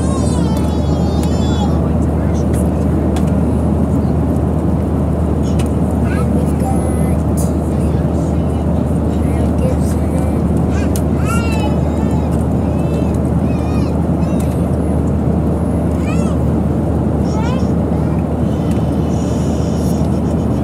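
Steady low roar of an airliner cabin in flight, the engine and airflow drone holding an even level throughout.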